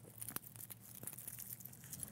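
Faint small clicks and rattles from the stainless steel bracelet of a vintage Omega Seamaster 300 being handled and fastened on the wrist: links shifting and the clasp working.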